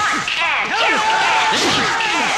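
Action-film fight sound effects: a dense run of overlapping whooshes and whip-like swishes.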